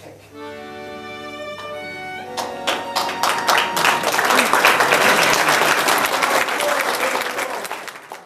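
A final chord held by a small folk band of violins, accordion and bassoon, breaking off about two seconds in. Audience applause then builds up and keeps going.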